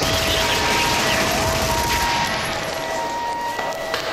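Hardcore rave DJ set on a live cassette recording: a dense crackling, hissing noise passage with two held tones and a short rising tone over it. The bass drops out about halfway through.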